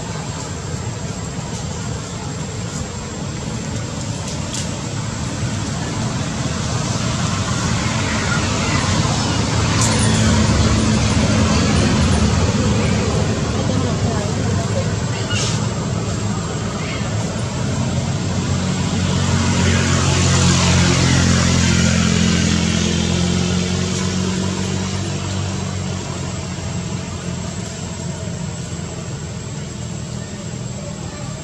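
Motor vehicle engines and road noise: a continuous hum that swells twice as vehicles pass, once about a third of the way in and again about two thirds of the way in.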